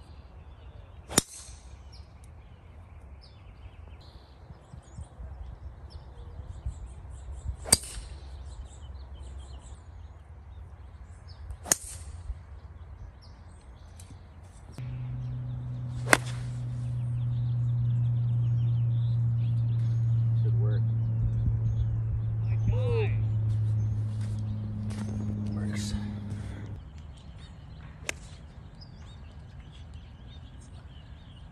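Golf clubs striking balls: five sharp, separate hits spread out, the first a driver off the tee and one a shot out of a sand bunker. In the middle a steady low hum starts suddenly and runs for about twelve seconds before cutting off.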